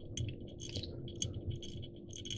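Faint, irregular light ticks and rasps of tying thread being wound from a bobbin around a jig hook shank, laying down a thread base for a fly.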